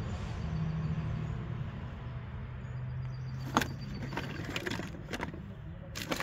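A motor vehicle engine running with a steady low hum that drops slightly in pitch about two seconds in. In the second half come a few sharp clicks of plastic toys knocking together as a hand rummages in a wooden box of toys.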